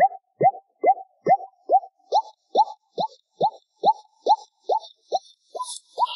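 A cappella vocal "bop" sounds carry the song's melody as a steady string of short, plopping notes, each quickly falling in pitch, about two a second. From about two seconds in, a fainter rhythmic high ticking joins them.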